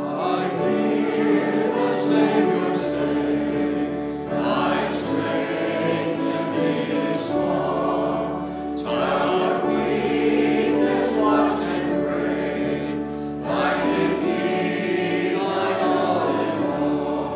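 Church choir and congregation singing a hymn together, in sung phrases a few seconds long: the invitation hymn at the close of the sermon.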